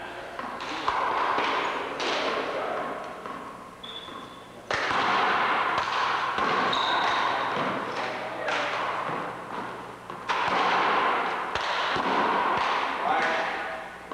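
A handball being slapped by hand and smacking off the wall and the wooden floor of a one-wall court: a string of sharp, uneven smacks that echo in the gym.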